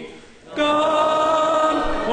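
Church congregation singing a hymn a cappella in several-part harmony, holding long notes. A brief pause between phrases at the start, then the next phrase comes in.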